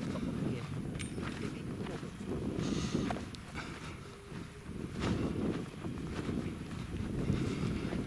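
Wind noise buffeting the microphone, with the footsteps and brushing of a walker moving along a grassy hill track and a few light knocks.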